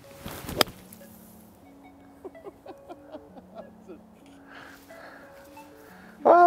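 A 17-degree TaylorMade P790 UDI driving iron, played with an open face, cutting through bunker sand in a splash shot: a short rush ending in one sharp strike about half a second in. Faint background music follows.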